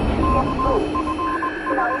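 Radio-style interference: a string of short beeps at one steady pitch, like Morse code, over a low steady tone and faint whistling glides. At the very start, the rumble of a boom dies away.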